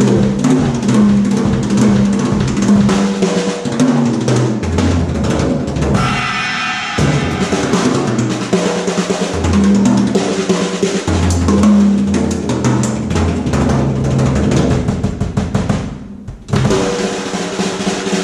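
Drum kit solo: rapid strokes across toms and snare with cymbals over a driving sixteenth-note bass drum pattern, the toms sounding at several pitches. About six seconds in, the low drums drop out briefly under a ringing cymbal. Near the end the playing breaks off for a moment, then starts again.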